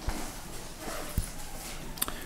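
Quiet room tone broken by a few faint, soft knocks, the clearest about a second in.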